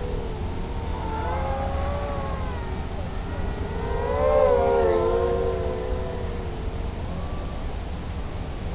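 Electric motors and propellers of a 4S-powered RD230 FPV quadcopter whining, the pitch gliding up and down as the throttle changes. The whine is loudest about four to five seconds in, as the quad passes close by.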